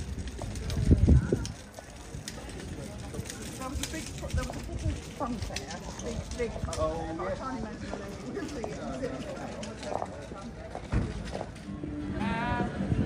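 Street ambience on a cobblestone square: passers-by talking and footsteps clicking on the cobbles, with a low rumble about a second in.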